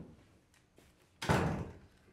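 A single loud slam about a second in, dying away over about half a second, with a lighter knock just before it.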